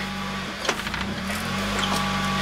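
Mazda Miata four-cylinder engine idling. Its note sags around the middle and climbs back near the end, with one sharp click a little under a second in.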